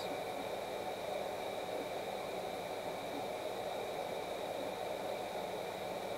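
Steady hiss of room tone with two faint, steady high-pitched whines and no distinct sound events.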